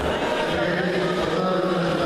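A held, chant-like voice sounding over the chatter of a crowd in a sports hall.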